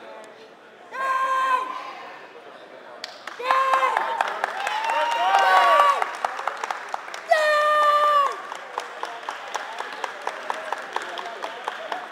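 A boy's loud, held kiai shouts while performing a karate form: one about a second in, a longer stretch around the middle with other voices overlapping, and a falling one a little past seven seconds. Steady rhythmic clapping follows over the last few seconds as the form ends.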